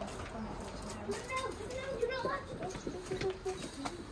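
Faint voices of children and adults talking, with no single loud sound standing out.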